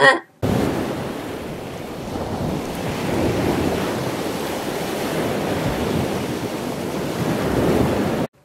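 A steady rushing noise like wind or surf, with no tone in it, that cuts in suddenly about half a second in and stops just as suddenly at the end.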